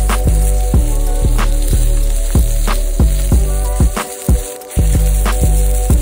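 Background music with a steady beat, over the sizzle of a beef fillet tip searing in hot oil in a cast-iron Dutch oven.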